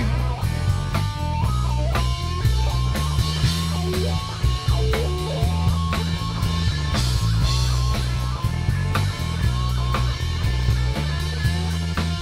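Live rock band playing an instrumental break: an electric guitar plays a lead line with bent notes over bass guitar and a drum kit.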